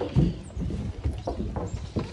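Footsteps on wooden boardwalk planks, a run of short thuds at about two or three steps a second.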